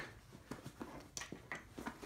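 Faint handling noises from a nylon rifle case: a scatter of short light clicks and rustles as hands work a pocket flap, its straps and plastic buckles.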